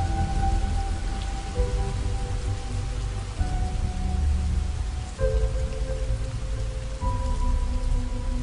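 Steady rain mixed with slow ambient music. The music has held notes over a deep bass, with the chord changing about every two seconds.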